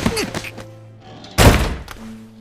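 Two heavy thuds of blows landing on a body, one at the very start and a louder one about a second and a half in. Sustained background music plays under them.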